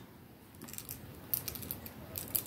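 Pliers crushing a choker wire loop closed around a clasp: faint, scattered small clicks and scrapes of the jaws on the wire, a few close together a little over a second in.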